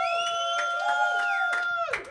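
Electronic sound logo: a chord of several steady tones held for under two seconds, with a few light clicks, that bends down and cuts off near the end.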